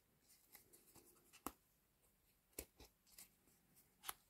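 Faint, scattered clicks and rustles of threads being pulled from and pressed into the slots of a foam kumihimo braiding disk, the sharpest click about a second and a half in.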